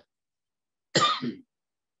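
A man coughs once, a short sharp cough about a second in.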